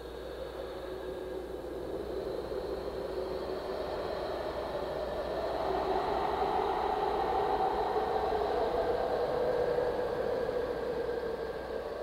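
Ambient drone under the song's intro: a steady low hum beneath a hazy, whooshing wash with faint shifting tones, slowly swelling in loudness.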